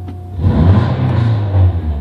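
Nissan 240SX four-cylinder engine blipped from idle about half a second in, revving loudly for over a second before the throttle is let off near the end. The revs then fall back but hang at about 2,000 rpm instead of returning to idle, which is the rev-hang problem the owner is showing.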